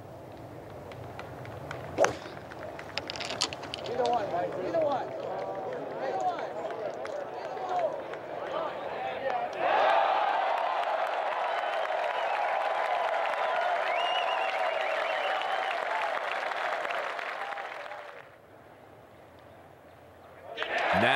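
A golf ball struck once with a club about two seconds in, then gallery voices rising as it rolls toward the hole. A loud cheer with applause breaks out about ten seconds in as the birdie goes in, and dies away near the end.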